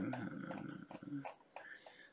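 A man's low, gravelly, drawn-out hesitation sound as he thinks, fading out over about a second, followed by a few faint clicks.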